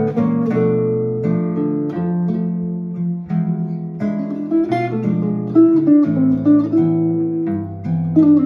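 Two guitars playing a jazz duet, an archtop jazz guitar and a nylon-string classical guitar: plucked melody notes over held chords, with a brief dip in level a little past three seconds and louder picked notes in the second half.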